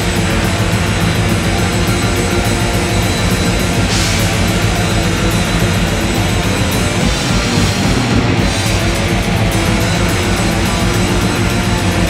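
A heavy metal band playing live at full volume: distorted electric guitars, bass guitar and a drum kit in a loud, dense wall of sound over a fast, even beat.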